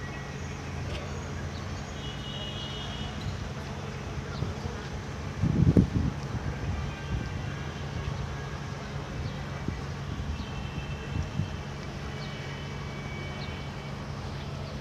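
Steady low engine drone, with a brief louder rumble about five to six seconds in.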